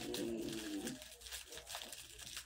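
A faint, low hummed or cooing vocal sound, like a person humming, for about the first second, then only soft room noise.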